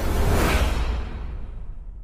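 Logo-animation whoosh sound effect over a deep low boom, swelling about half a second in and then fading away.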